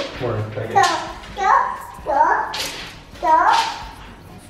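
A toddler's voice: about four short, high-pitched calls or babbled words.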